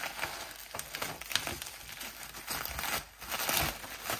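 Bubble wrap crinkling and crackling as hands pull it apart to unwrap a stack of blister-packed toy cars, with a busier stretch in the second half.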